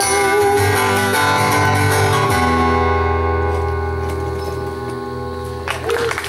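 Steel-string acoustic guitar playing the last bars of a song, ending on a chord struck about two seconds in that rings on and slowly fades. Applause breaks in just before the end.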